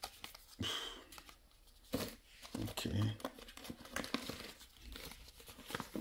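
Cardboard boxes and crumpled packing paper being handled, with irregular crinkling and rustling bursts, and a brief murmur of voice about three seconds in.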